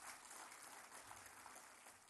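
Faint, distant applause from an auditorium audience: a soft, even patter of clapping, barely above near silence.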